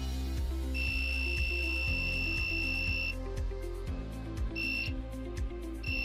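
A piezo buzzer module sounds a steady high-pitched warning tone: one long beep of about two and a half seconds, a short beep, then another starting near the end. It is the over-voltage alarm, sounding because the supply is above the 6 V limit. Background music with a steady beat plays under it.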